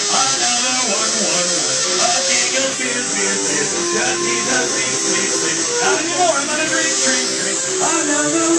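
Ukulele played live at a steady level, with a man's voice coming in at times.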